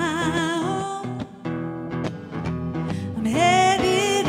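A woman sings a held, wavering note over strummed archtop guitar chords. The guitar carries on alone for about two seconds, and her voice comes back near the end.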